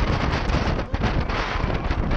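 Loud, gusty wind rushing over an action camera's microphone on a roller coaster running at speed, with a low rumble underneath.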